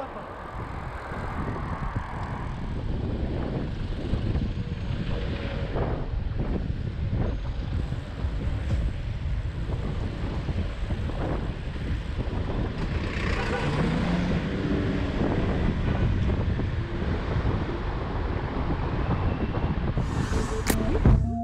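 Wind rushing over a handlebar-mounted action camera's microphone on a moving road bike, a steady low rumble mixed with the sound of surrounding road traffic. A faint humming tone, likely a passing vehicle, comes in about two-thirds of the way through.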